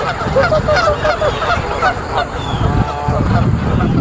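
A flock of Canada geese honking, a quick run of calls in the first two seconds, then fewer and more spread out.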